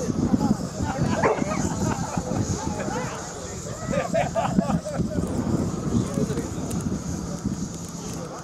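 Wind buffeting the microphone on an exposed summit, with indistinct voices of people standing around; a few short pitched calls come about a second in and again around four seconds in.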